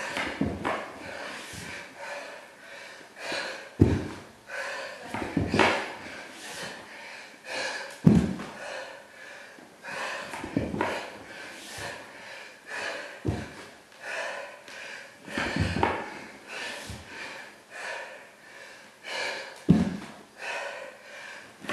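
A man breathing hard and panting from exertion while doing burpees, with a thud every two to three seconds as his hands and feet land on the hardwood floor.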